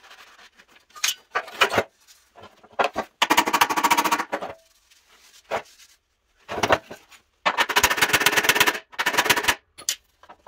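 A power tool working a steel truck running board in short bursts of rapid-fire rattling impacts, about five bursts of half a second to a second and a half each, with lighter scraping and handling of the metal between them.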